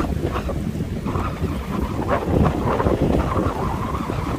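Wind buffeting the microphone in a steady low rumble, over choppy sea water washing against a rocky shore.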